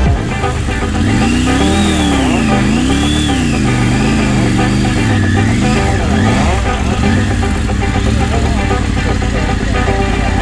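Motorcycle engine running, with music over it; a pitched sound rises and falls about six times between about one and seven seconds in.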